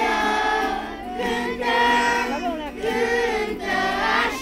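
A group of children singing a song together.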